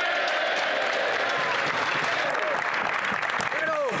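Applause from a roomful of Members of Parliament in the Commons chamber: many people clapping steadily, with scattered voices calling out through it.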